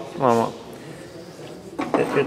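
A man says a short word, then low handling noise; near the end a brief rustling noise as a cloth rag wipes the aluminium oil-cooler plate.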